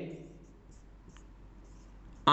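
Marker pen writing on a whiteboard: faint scratchy strokes with a brief squeak about halfway through.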